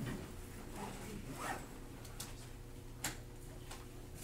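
Quiet classroom room tone with a steady low hum, broken by a few short scratchy clicks and rustles about halfway through and near the end.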